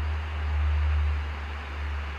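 A steady low rumble or hum with a faint hiss, swelling slightly in the middle, and no speech.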